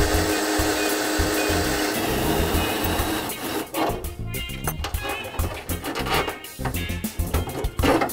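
A pneumatic hand tool on a coiled air hose runs steadily for about three seconds. After that come short, irregular bursts from a cordless drill, all over background music with a steady bass beat.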